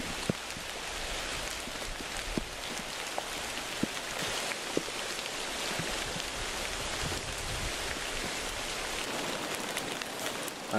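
Steady rain falling, with a few louder single drops striking close by now and then.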